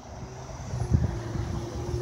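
Road traffic on a residential street: a low, steady hum of cars moving along the road.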